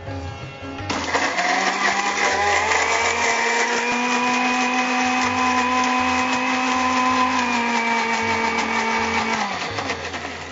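Electric mixer grinder with a stainless steel jar doing a wet grind. The motor starts about a second in, climbs in pitch as it comes up to speed, runs steadily, then drops and winds down shortly before the end.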